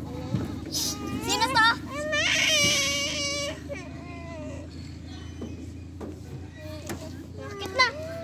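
Young children's high-pitched voices squealing and calling out while playing, with one long, wavering cry-like call about two seconds in. A steady low hum runs underneath.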